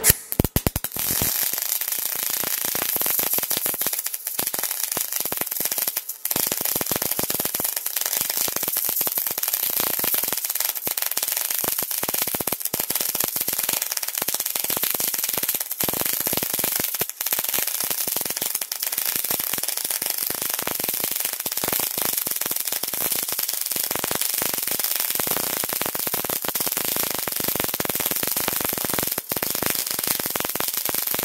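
Hitbox Multimig 200 Synergic MIG welder arc, struck at the start and held as a steady, fast crackle while a bead is run on steel in synergic mode, typical of short-circuit transfer. There are a few brief breaks in the crackle.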